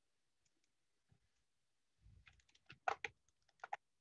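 Faint computer keyboard and mouse clicks, a quick cluster of keystrokes in the second half: a text box being copied and pasted with keyboard shortcuts.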